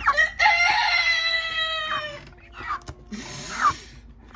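A young chicken gives one long, high call of about two seconds that falls slightly in pitch, then two short calls.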